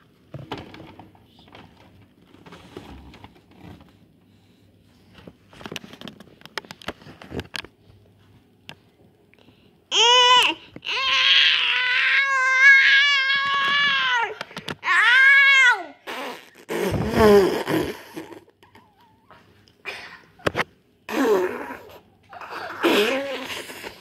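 A high voice making long, drawn-out wailing sounds with a wavering pitch, starting about ten seconds in and lasting some six seconds, after a stretch of quiet rustling and handling noises. A short, low, noisy sound follows.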